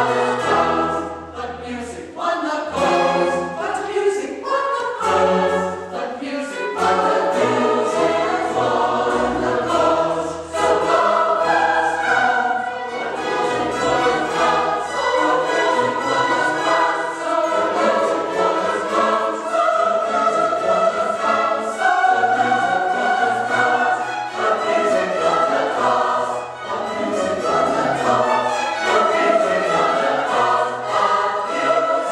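Large mixed choir singing a classical choral piece with string orchestra accompaniment, continuous throughout.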